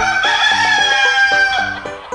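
A rooster crowing cock-a-doodle-doo in one long call, held and dipping slightly at the end, over a bouncy children's song backing.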